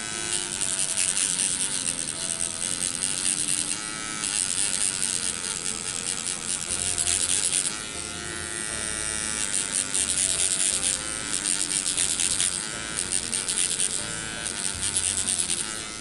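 MicroPen electric microneedling pen buzzing steadily as it is worked over the skin, its level rising and falling as it is moved and pressed.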